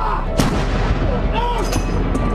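A single loud bang with a short ringing tail about half a second in, then a few sharper cracks near the end, over a steady music bed.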